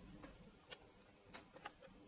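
Near silence with four faint, short clicks, spread out through the second half.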